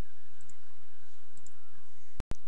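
Two faint clicks about a second apart, consistent with a computer mouse. Under them is a steady low hum and hiss from the headset microphone.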